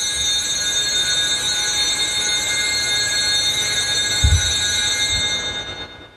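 A cluster of altar bells shaken in a continuous, steady jingling ring, the signal of the elevation at the consecration. Two low thumps come about four and five seconds in, and the ringing dies away at the very end.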